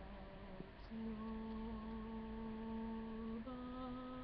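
A man singing unaccompanied, holding long drawn-out vowel notes. After a brief break about a second in, he holds a higher note, then steps up slightly near the end.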